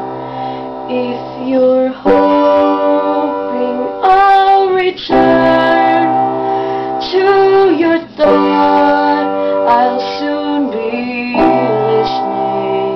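Piano playing slow, held chords, with a female voice singing long notes over it in places.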